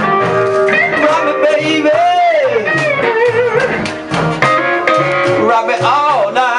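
Live blues band playing an instrumental break with guitar lead: bent, sliding guitar notes over a steady pulsing bass line.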